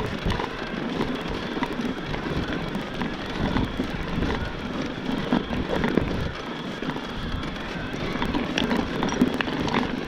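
Electric mountain bike ridden over a rough, stony dirt singletrack: tyres crunching on dirt and rock, with frequent small clicks and rattles from the bike and an uneven low rumble of wind on the microphone.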